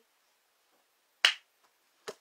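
A single sharp smack of a hand, about a second in, dying away quickly.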